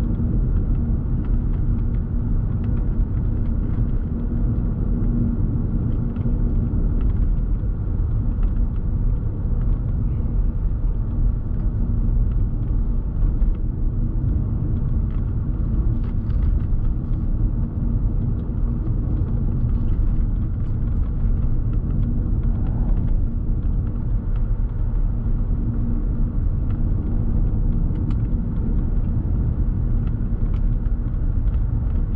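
Steady low rumble of a car driving on a paved road, heard from inside the cabin: tyre and engine noise with a faint steady hum.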